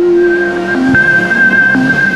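Electronic logo-sting music: sustained synthesized tones, a low one and a high held note, over a whooshing sweep.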